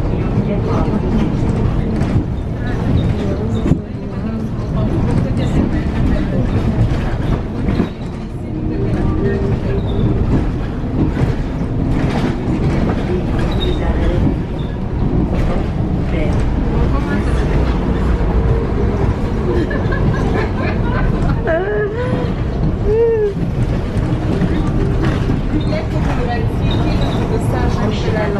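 Steady engine and road rumble heard from inside a moving bus.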